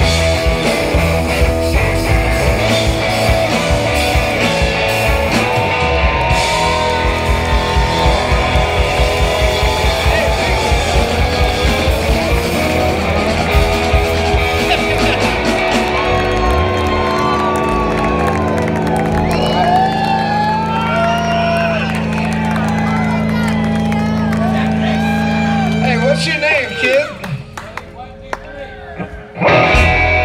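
Live rock band playing drums, electric guitar and bass, with fast drumming for the first half. The band then holds one long low chord while voices shout and cheer over it. The music drops out about four seconds before the end, and the band comes back in with one loud hit near the end.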